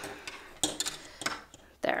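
Hard plastic pom-pom maker clacking as its hinged arms are pulled apart and taken off the pom-pom: two sharp clicks about a second apart.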